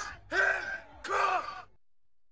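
Two short wordless vocal sounds from a person's voice, each under half a second.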